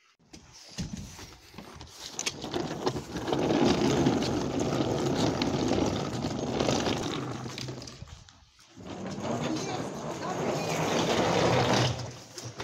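Hard-shell suitcase wheels rolling over rough asphalt: a steady gritty rumble that drops away briefly about eight and a half seconds in, then picks up again.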